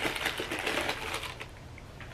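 Rustling of a fabric shoe dust bag as it is picked up and handled, with many small rapid ticks. It is busiest in the first second and a half, then dies down.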